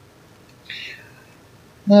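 A short, breathy intake of air about two-thirds of a second in over faint room hiss, then a man starts speaking right at the end.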